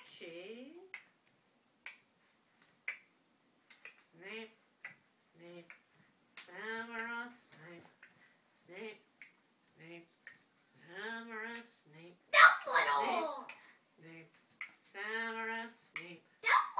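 Sharp clicks about once a second, imitating a clock ticking, with a child's wordless voice sounding between them. The child's voice is loudest about twelve and a half seconds in.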